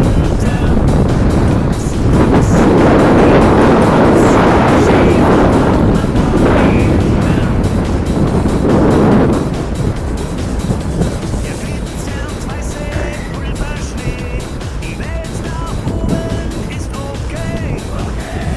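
Wind rushing over a body-held camera's microphone, with skis running on snow during a downhill ski run. It is loud for the first nine seconds or so, then eases off.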